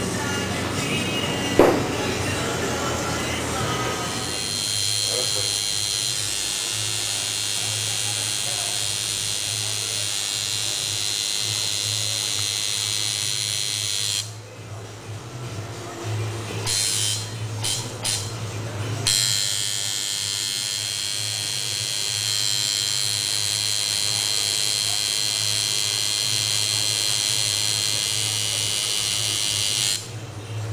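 Electric tattoo machine buzzing steadily on the skin; the higher part of the buzz drops away for about five seconds around the middle, then resumes.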